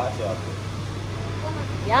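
Steady low hum of indoor room noise, with a voice briefly at the start and again near the end.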